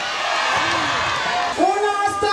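Crowd cheering, a dense steady noise with no single voice standing out. About one and a half seconds in, an amplified voice comes back in over it.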